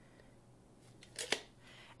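A quiet room, then about a second and a quarter in a brief scrape that ends in one sharp click as a tape measure is handled and taken away from the plastic bowl.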